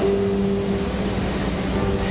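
A steady hiss with a low, even held tone underneath it, like a soft sustained background note or hum.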